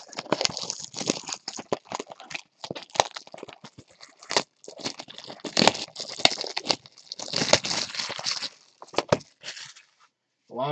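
Plastic shrink wrap on a cardboard trading-card hobby box crinkling and rustling as the box is handled and unwrapped, with many small irregular crackles and clicks.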